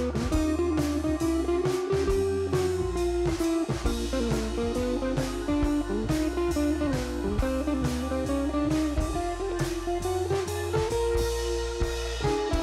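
Instrumental background music led by guitar, with bass and drums keeping a steady beat.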